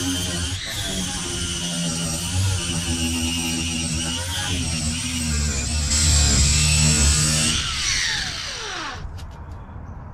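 Angle grinder grinding metal flat stock, a steady high whine that dips briefly as the disc bites. About seven and a half seconds in it is released and winds down with a falling whine, then stops.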